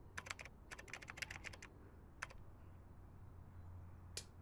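Faint, irregular clicks in quick runs, like keys being typed, mostly in the first two seconds, over a low steady hum.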